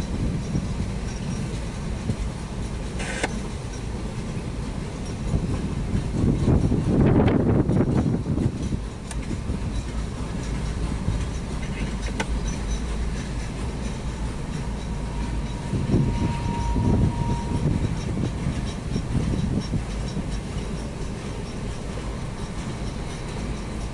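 CSX mixed freight train's cars rolling through a grade crossing, heard from inside a stopped car: a steady rumble and clatter of wheels on rail, loudest about six to eight seconds in. A short thin wheel squeal comes about sixteen seconds in, as the train turns onto a curve.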